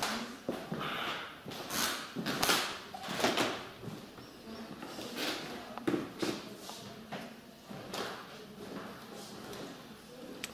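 Scattered knocks, rustles and handling noises in a room, with faint low voices now and then.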